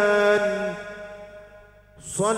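A man singing sholawat (Islamic devotional praise) into a microphone, holding one long note that fades away over about two seconds.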